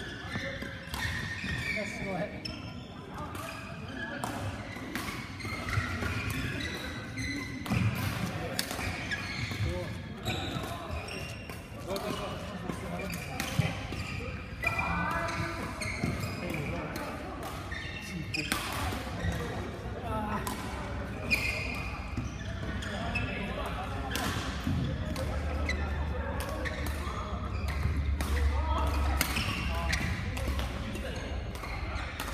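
Badminton play in a busy hall: irregular sharp racket hits on shuttlecocks and footwork on the court floor, over the continuous chatter of players' voices.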